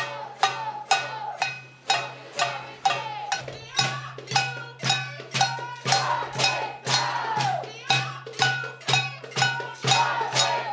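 A metal cooking pot struck in a steady rhythm, about two hits a second, each hit ringing briefly with a clanging metallic tone. This is protest noise-making by banging on a pot.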